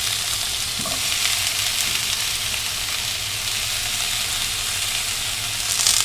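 Tomato wedges sizzling steadily in hot oil in a frying pan. A few sharp crackles near the end come as sliced onion goes into the pan.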